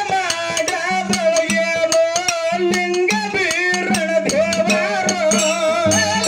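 A man singing a Kannada dollina pada folk song into a microphone in long, wavering held notes, over rapid, steady percussion strikes with a rattling jingle and a steady low drone.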